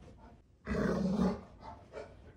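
Golden retriever giving one short, low vocalization lasting under a second, a little past halfway through.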